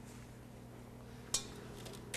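Quiet kitchen room tone with a steady low hum, broken once a little over a second in by a single light click.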